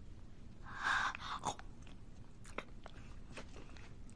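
Paper food wrapping rustling as it is opened, about a second in, then a few short crunching bites of food.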